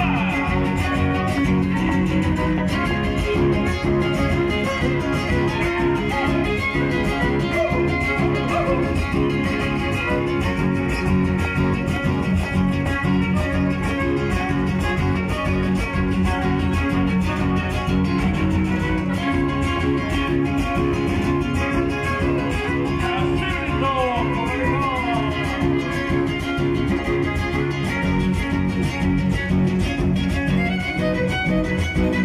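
Live string trio playing through a PA: strummed and plucked guitars with a violin sliding through a phrase near the end.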